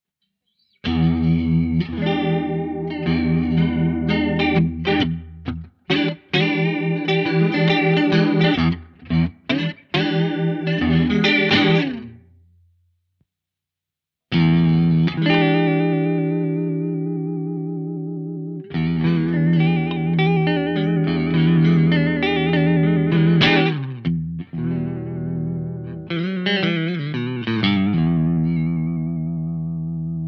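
Electric guitar played through a ROSS Chorus pedal, an analogue bucket-brigade chorus. First come short, clipped chords with a chorus shimmer. After a pause of about two seconds, longer ringing chords follow with a clear pitch wobble from the pedal's vibrato mode.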